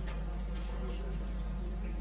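Steady low electrical hum, with a few faint rustles over it.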